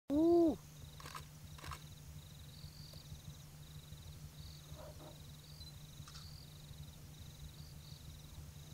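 A short animal call, loud and rising then falling in pitch, at the very start. After it comes a steady low hum with faint, repeated high trills and a couple of soft clicks.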